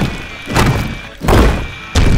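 Repeated heavy demolition thuds, about one every two-thirds of a second and each fading quickly, as an excavator bucket smashes a brick wall. Background music plays underneath.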